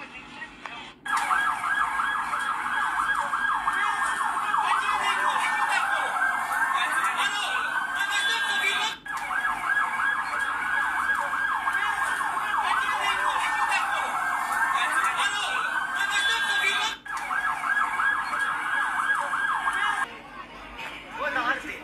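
Emergency vehicle siren sounding loudly, a fast warble mixed with slower rising and falling sweeps. It starts about a second in, cuts out abruptly twice about eight seconds apart, and restarts each time.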